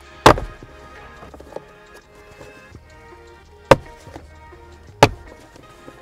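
Three sharp snaps of plastic trim clips popping loose as the WRX shifter trim panel is pulled straight up out of the centre console, spread over several seconds. Quiet background music runs underneath.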